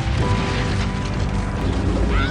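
A loud, dense crackling rush of noise, an explosion sound effect, over sustained trailer music with held tones.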